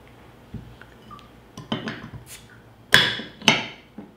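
Glass beer bottle and metal bottle opener handled on a table: a few light knocks, then two sharp metallic clacks about half a second apart near the end as the opener is set on the crown cap and prises it loose.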